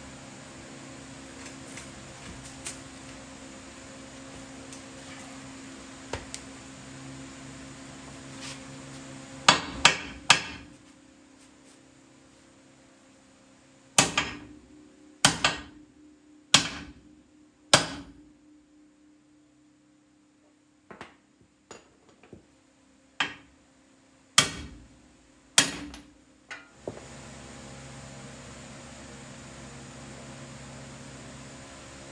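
Hammer blows on steel at the lower ball joint of a Ford F-150's lower control arm, knocking the old ball joint out after its snap ring is off. About fifteen hard, ringing strikes come in bunches of two to four, some lighter ones in the middle, with a steady hum in the first third and again near the end.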